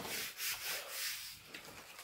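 Hands rubbing over an adhesive green sheet to smooth it flat: several quick hissy rubbing strokes, then fading away after about a second and a half.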